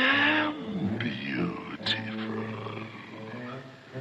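Film soundtrack: sustained orchestral chords under a drawn-out vocal sound from the giant python character at the start, rising then falling in pitch, followed by wavering glides and a short sharp high sound near the middle.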